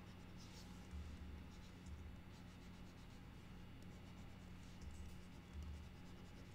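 Faint, soft scratching of a stylus pen stroking across a drawing tablet's surface in short, uneven strokes, over a low steady hum.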